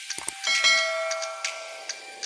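Subscribe-button animation sound effect: a couple of quick mouse clicks, then about half a second in a bright notification-bell ding that rings on and slowly fades, with light ticks scattered through it.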